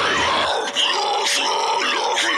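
Harsh growled vocals from a metal track, with the bass and low end dropping away about half a second in, leaving mostly the growled voice.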